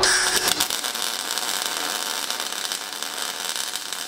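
MIG welding arc from an Everlast iMig 200 laying a bead on steel: a steady crackling hiss that starts abruptly.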